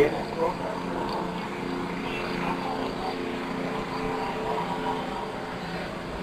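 Steady engine drone, several low tones held level, under the faint murmur of distant voices in the street.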